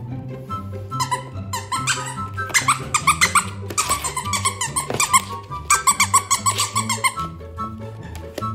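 Squeaky plush toy squeaking in quick runs of short squeaks as a cavapoo puppy bites and chews it, over background music with a steady bass line.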